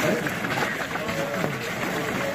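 Several voices talking over one another, with noise of movement and handling.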